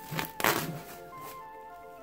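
Plastic cling film crinkling as it is peeled off a glass bowl, with a short loud rustle about half a second in, over steady background music.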